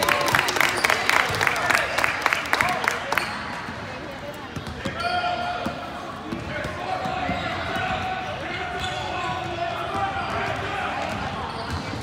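Youth basketball game in a gym: a ball bouncing on the court and players moving, with spectators' voices. A quick, even run of sharp taps fills the first three seconds.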